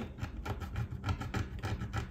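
Screwdriver tip scraping old adhesive off the edge of an iPad touchscreen glass: faint, irregular scratching strokes.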